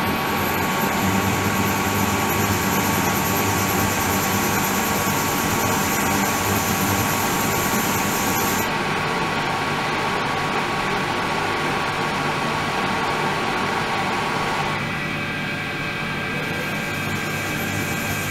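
Ultrasonic cleaning tank running with its water circulation pump: a steady hiss of churning water and motor hum under several high, steady whining tones. About nine seconds in the highest tones stop, and near the end the mid-pitched tones change.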